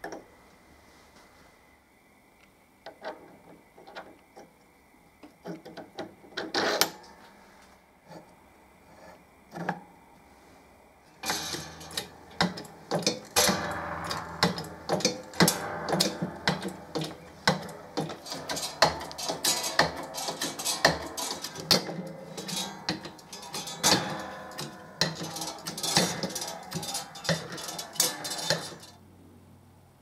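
Keyway broach being pressed through a toothed timing pulley's bore in an arbor press. It starts with scattered clinks and knocks as the pulley, bushing and broach are set. From about a third of the way in comes a dense run of sharp metallic clicks and crunches as the broach teeth cut, and this stops abruptly near the end.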